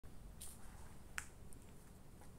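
A few short, sharp clicks, the loudest about a second in, over a low steady rumble.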